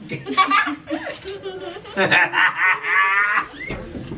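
High-pitched laughter and giggling, louder about halfway through and ending in a wavering, pulsing squeal.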